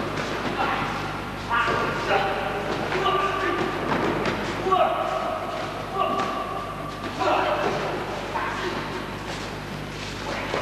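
Voices calling out in a large hall, with repeated thumps of bodies landing on the mat during aikido throws and breakfalls, over a steady low hum.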